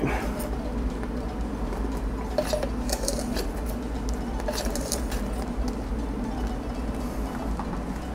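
Beer wort at a rolling boil in a stainless steel brew kettle, bubbling steadily over a constant low hum. A few light clicks and taps, from a bottle cap and measuring spoon, come a few seconds in as yeast nutrient is added.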